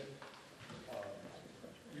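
A quiet pause in a man's speech, broken by a hesitant "uh" about a second in and the start of a word at the very end.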